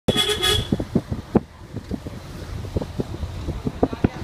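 A vehicle horn toots once, briefly, at the very start. After it come irregular low thumps and rumble from wind and motion on the microphone of a moving vehicle.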